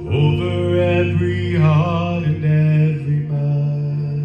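Male gospel vocal group singing in harmony through microphones, holding long notes, with a wavering vibrato about halfway through.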